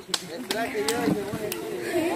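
Several people talking quietly in the background, with a few scattered sharp clicks.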